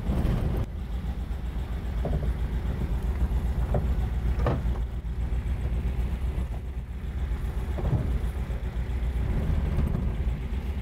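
Modified engine of a 1962 Volkswagen microbus running with a steady low rumble, first idling and then pulling away at low speed, with a short louder burst right at the start.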